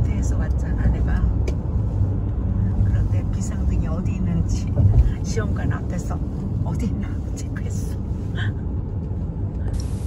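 Road noise inside a moving car's cabin: a steady low rumble of tyres and engine at highway speed.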